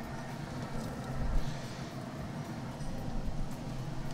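Traeger pellet grill running with a low, steady hum while marinated pork rib pieces are laid on its hot grate with tongs. A faint sizzle rises briefly about a second and a half in.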